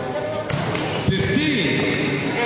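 A basketball bouncing on the court a few times, the sharpest bounce about a second in, with voices calling out around it.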